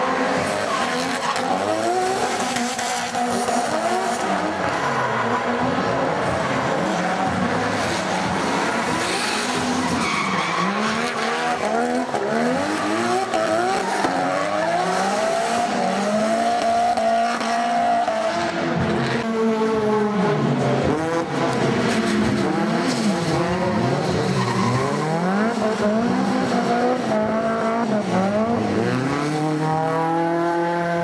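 Drift cars' engines revving up and down again and again, with tyres screeching as the cars slide sideways through the turns.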